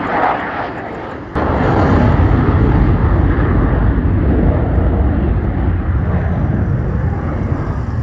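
Dassault Rafale fighter jet's twin turbofans, a steady roar from a low pass. About a second and a half in it turns suddenly louder and deeper, then holds as a heavy rumble that eases slightly as the jet climbs away.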